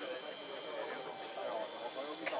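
Faint background voices over a thin, steady high whine from the Zephyr RC jet's electric ducted fan, throttled back for slow flight.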